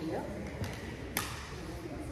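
Indistinct voices of people in a large room, with one sharp click a little over a second in.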